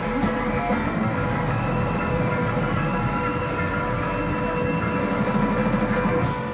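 Rock band playing live: electric guitar, bass, keyboards, saxophone and drums hold a loud, dense wall of sustained notes.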